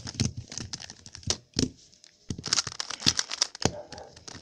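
White-plastic stickered 3x3 Rubik's cube turned fast by hand, its layers clacking in rapid runs of clicks with a short lull about halfway. It is being twisted hard to see whether its pieces pop out.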